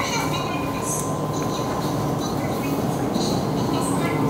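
Steady hum and rumble of refrigerated glass-door supermarket freezers, with a thin, steady high tone running through it.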